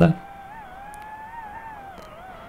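DJI FPV drone's motors and propellers whining quietly in a steady tone that wavers slightly in pitch as the throttle changes.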